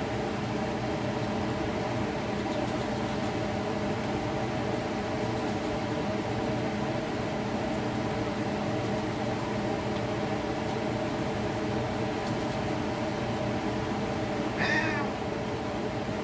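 Festival dumplings frying in a pan of oil, a steady sizzle over a steady kitchen hum. Near the end a short, high, wavering cry cuts in.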